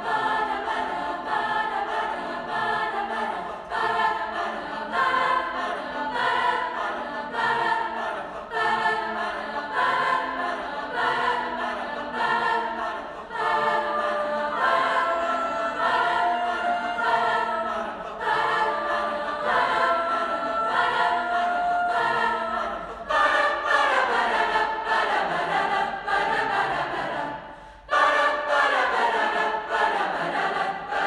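High school chorus singing together in many voices, in sustained phrases, with a short break near the end before the next phrase comes in.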